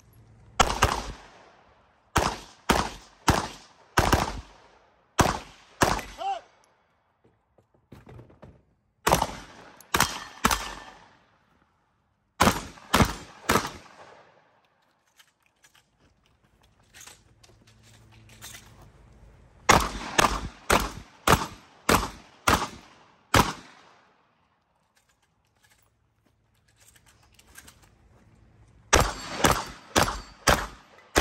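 Gunfire from a competition shooter: strings of quick single shots, a fraction of a second apart. The strings are broken by pauses of a few seconds while the shooter moves between positions.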